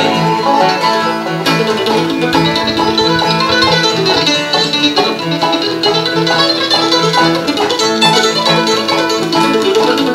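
Bluegrass band playing an instrumental break, with an F-style mandolin picking the lead over banjo and acoustic guitar backing.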